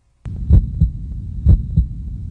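Slow heartbeat-style double thumps, a pair about once a second, over a low hum, starting just after a brief silence.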